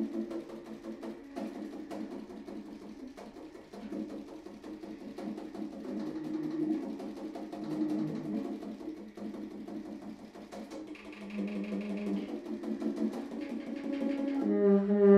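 Solo baritone saxophone playing fast, choppy low notes with clicking, percussive attacks. Near the end it moves into longer held notes.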